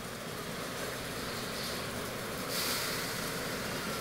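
A steady rushing noise with no clear pitch, growing slightly louder and brighter about two and a half seconds in.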